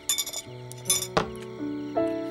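Chopsticks clinking against ceramic bowls: a few quick taps at the start and a louder one about a second in. Soft background music with sustained notes plays underneath.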